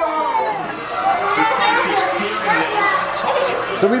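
Excited, overlapping voices of young children and a man at play, with no clear words.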